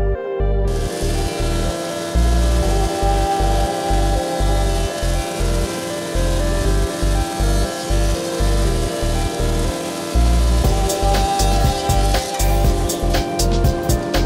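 Background music with a steady beat, laid over a Felder jointer-planer whose cutterblock comes up to speed and runs with a steady hum about a second in.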